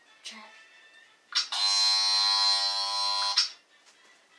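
Electric hair clippers switched on about a second in, buzzing steadily for about two seconds, then switched off.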